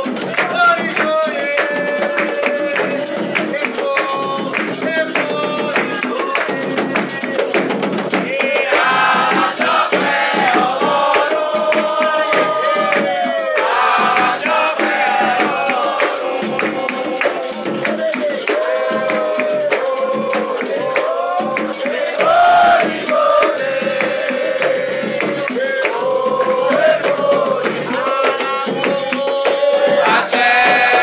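Candomblé ritual music: atabaque hand drums, led by the rum drum, beating a steady driving rhythm under a chant sung by a group of voices.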